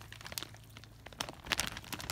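A clear plastic zip-top bag crinkling as it is shaken out, with irregular crackles and a few louder ones just past halfway, as wet food scraps slide out of it.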